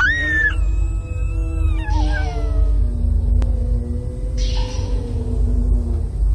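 Girls screaming on a slingshot reverse-bungee ride as it launches: a long, high scream that starts at once and slides lower over several seconds, with wind rumbling on the microphone.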